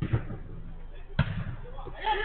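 A football struck twice, two dull thuds about a second apart.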